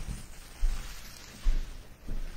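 A stack of trading cards handled in the hands, with a light rustle and two dull knocks, the first under a second in and the second about a second and a half in.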